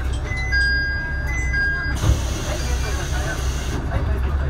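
Nagaragawa Railway diesel railcar standing at the platform with its engine idling as a steady low hum. A two-note electronic chime sounds twice in the first two seconds, then a single thump about two seconds in is followed by a hiss that stops near the end.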